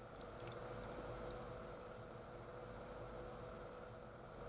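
Faint, steady running water from a shower, over a low steady hum.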